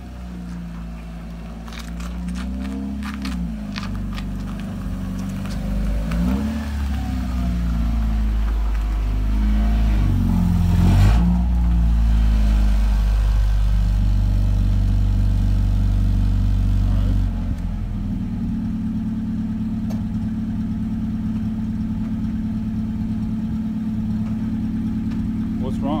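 Mazda Miata's four-cylinder engine revving up and down several times as the car is maneuvered, loudest about eleven seconds in. At about seventeen seconds it drops suddenly to a steady idle that runs on to the end.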